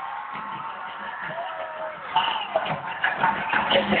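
Live concert music over an arena sound system, heard from the audience, with a gliding tone early on; it grows louder and busier about halfway through.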